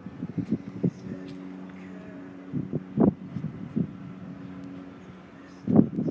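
A steady low mechanical hum, like an engine running at idle, with a few short faint vocal sounds over it.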